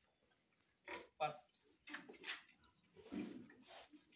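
Pigs grunting faintly, several short grunts spread through the few seconds.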